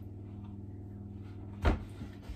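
A single short knock from a metal roasting tin of potatoes being handled on a ceramic hob, about one and a half seconds in, over a steady low hum.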